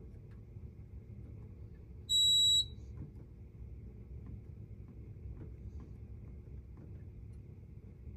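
A fire alarm control panel's built-in beeper gives one short, high beep of about half a second, a couple of seconds in. Soft clicks of its keypad buttons being pressed come and go around it.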